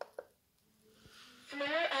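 Eufy RoboVac L70 Hybrid robot vacuum's recorded female voice prompt saying "Floor uneven", about one and a half seconds in. This is its anti-drop (cliff) sensor warning that it is not on an even surface. A light click comes just before, near the start.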